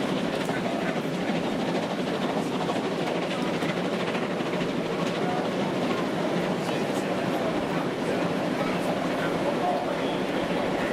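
A railway passenger coach running at speed, heard from inside: a steady rumble and rush of wheels on rail, with faint scattered clicks.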